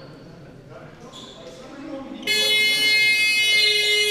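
Scoreboard horn sounding in a basketball hall: one loud, steady blast starting just over two seconds in and lasting about two seconds. Before it, voices and a basketball bouncing can be heard in the hall.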